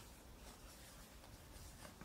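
Faint scratching of a felt-tip marker writing on flip-chart paper in a quiet room.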